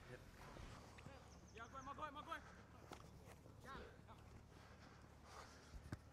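Near silence outdoors, with faint, distant voices talking briefly about one and a half to two and a half seconds in and again near the middle.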